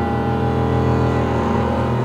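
Chamber ensemble with live electronics holding a dense, sustained low chord, with bowed cello and double bass among the deep drones, swelling slightly near the middle.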